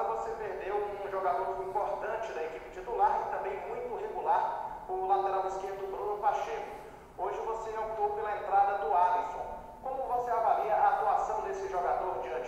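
Speech only: another person's voice putting a question, heard thin and without any low end, as if over a call line.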